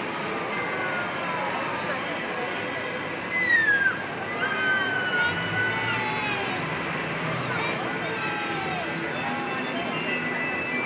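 Busy city street ambience: the chatter of a crowd over passing traffic, with a loud, brief falling squeal about three and a half seconds in.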